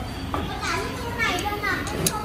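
Children's high-pitched voices chattering, mixed with other people talking.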